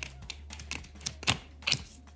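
Pages of a small handmade paper flip book being flicked through with the thumb: about five sharp paper flicks and snaps, the loudest a little past the middle.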